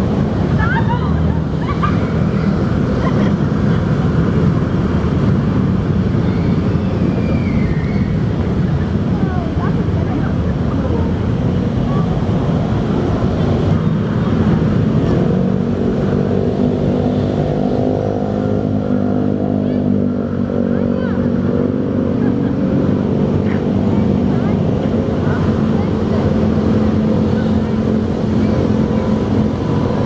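Steady road traffic noise. A little past halfway, one vehicle's engine rises and then falls in pitch as it passes.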